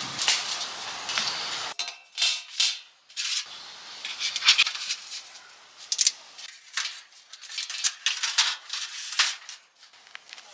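Lightweight folding fire pit being assembled: its thin metal rods and base plate clink and clatter irregularly as they are fitted together, with the fire sheet handled over it.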